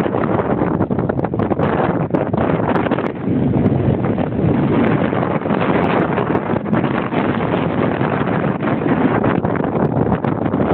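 Strong wind buffeting the camera microphone: a loud, steady, rough noise that rises and falls constantly in strength.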